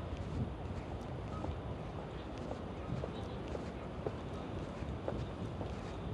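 Footsteps on stone paving tiles, a light irregular clicking of steps over a steady hum of city street noise.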